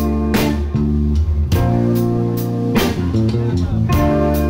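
Live rock band playing an instrumental passage: electric guitars and bass guitar holding chords that change about every second, with drum and cymbal hits.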